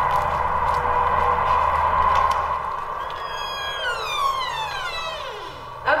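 A siren holds one steady tone, then from about three seconds in winds down, falling steadily in pitch until it fades out just before six seconds.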